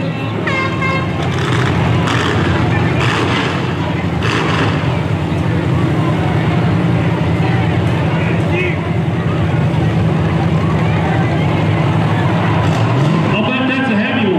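Several demolition derby cars' engines running together in a steady drone, with one engine revving up near the end.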